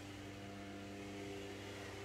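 A steady low machine hum made of several fixed tones, holding level throughout.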